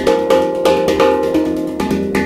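Hang (PANArt steel handpan) played with the hands: rapid finger and palm strikes on its tone fields, the metal notes ringing and overlapping.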